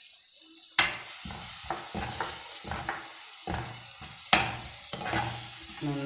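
Onions, chillies and tomato purée sizzling in hot oil in a pan, stirred with a metal spoon that scrapes the pan in short repeated strokes. The sizzle starts suddenly about a second in.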